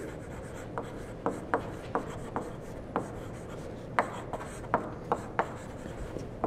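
Chalk writing on a blackboard: a string of irregular sharp taps and short scrapes as letters are written.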